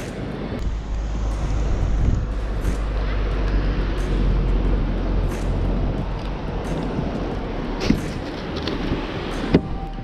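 Wind buffeting the microphone in a steady low rumble over the wash of surf breaking on the beach, with a couple of short sharp knocks near the end.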